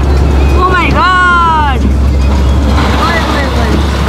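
Steady low wind rumble on the microphone and road noise from a moving car. About a second in, a high-pitched voice calls out once, its pitch arching up and then down.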